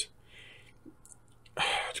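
A man's breathing in a pause between sentences: faint at first, then a short, sharp intake of breath through the mouth near the end, just before he speaks again.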